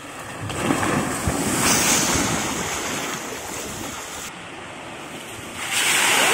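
Rushing, splashing water at water-park rides: water running down a slide, in short clips that change abruptly, then louder near the end as a tipping bucket dumps its water.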